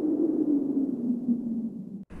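Low electronic hum from an animated-logo sound effect. It rises slightly in pitch, then sinks and fades away, ending in an abrupt cut.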